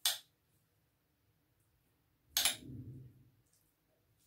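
Two short kitchen clatters of a utensil against a dish: a brief click right at the start, then a louder knock about two and a half seconds in with a short rough tail.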